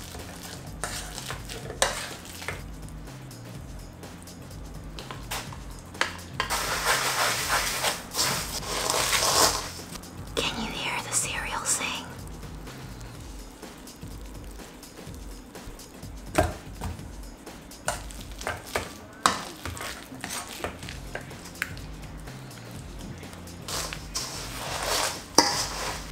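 Metal potato masher squishing ripe bananas in a stainless steel bowl, clinking against the bowl, with crushed cornflakes rustling and crunching as they are stirred together. Quiet background music runs underneath.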